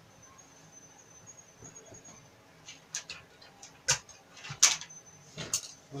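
Cloth rustling as hands slide over and smooth a length of trouser fabric on a padded cutting table: a quiet start, then a handful of short brushing swishes from about halfway in.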